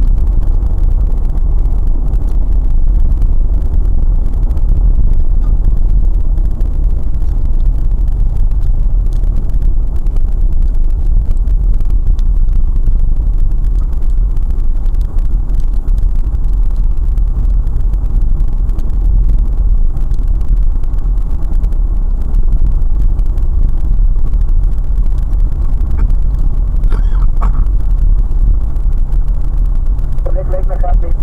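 A car's engine and road noise heard from inside the cabin while driving: a steady low rumble with no change in pace.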